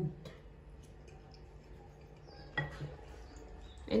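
Faint, scattered clicks of a metal spoon against a ceramic bowl of macaroni.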